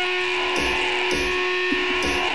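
Guitar strumming a ringing chord in an indie rock song, re-struck about every half second.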